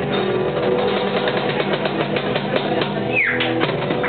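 An acoustic guitar, an acoustic bass and a cajón playing together, with held string notes under quick cajón hits. A short high sound falls in pitch about three seconds in.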